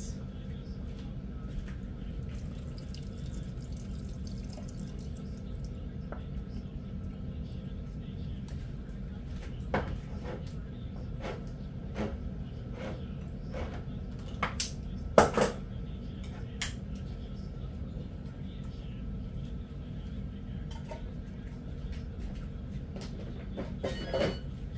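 Can of peas being drained at a table: scattered light metallic clicks and knocks of the can and lid over a steady low hum, the loudest knock about fifteen seconds in.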